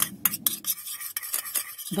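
A thin metal spoon stirring coconut oil and vitamin E gel in a small plastic bowl, scraping and clicking against the bowl's sides in quick, irregular strokes.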